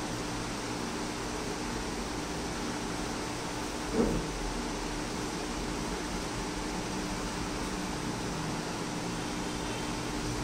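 Steady hum of room ventilation, an even hiss with a low steady tone. A brief low sound stands out about four seconds in.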